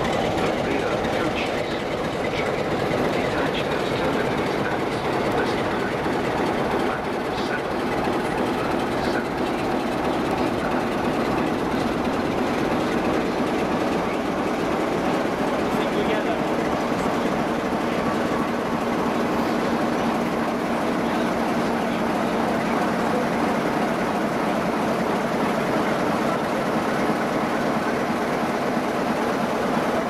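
Passenger coaches rolling slowly past, a steady rumble with the clickety-clack of wheels over rail joints. From about halfway a steady engine hum joins in as the trailing Class 47 diesel locomotive draws near.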